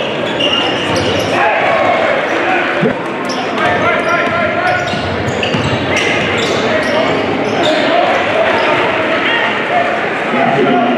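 Live gym sound of a basketball game: a ball dribbled on the hardwood court amid crowd chatter in a large echoing hall, with short high sneaker squeaks scattered throughout.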